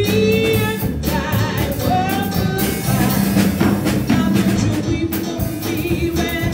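A woman singing a worship song into a microphone while accompanying herself on an electronic keyboard.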